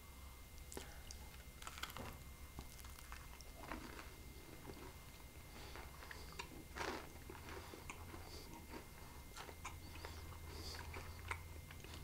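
Faint chewing of a mouthful of chocolate chip cookie, with scattered soft crunches and mouth clicks.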